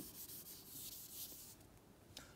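A duster rubbing briefly across a chalkboard, faint, after a light tap as it meets the board, wiping out a chalk mark.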